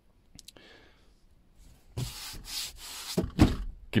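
Rubbing, brushing noise for about two seconds in the second half, with a couple of dull thumps near the end. A few faint clicks come earlier.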